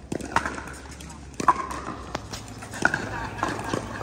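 A few sharp, scattered pops of pickleballs being struck by paddles and bouncing on the hard courts, with faint voices of players in the background.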